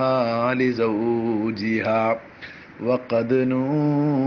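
A man chanting a melodic devotional line in long held notes. The voice breaks off a little after two seconds in and starts a new phrase about a second later.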